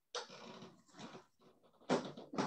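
A dog making rough, noisy vocal sounds in uneven bursts, starting just after the beginning and louder near the end.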